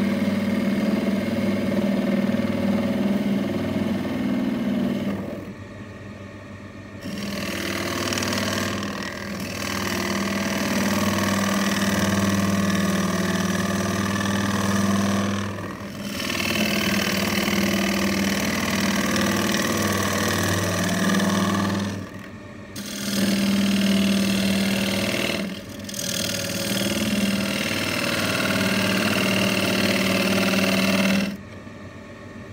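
Wood lathe running while a gouge cuts the inside of a spinning hawthorn bowl blank: a steady motor hum under the rough noise of the cut. The cutting noise drops away briefly four times.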